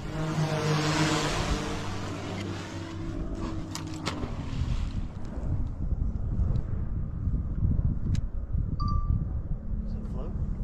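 Wind buffeting the microphone over open water from a fishing boat, with a steady motor hum that fades out over the first few seconds. A few faint clicks come through the wind later on.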